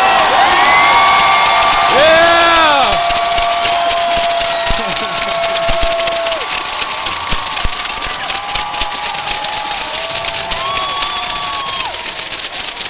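Basketball arena crowd cheering and yelling, with several voices shouting drawn-out calls, one held for about four seconds. Clapping fills in from about a third of the way through.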